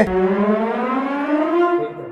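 A single long siren-like tone gliding slowly and steadily upward in pitch for nearly two seconds, stopping just before the end.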